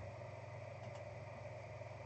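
A low, steady electrical hum with a faint computer-mouse click about a second in.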